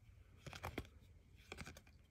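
Faint handling of glossy trading cards, the cards sliding and flicking against one another, with a few soft clicks about half a second in and again around a second and a half in.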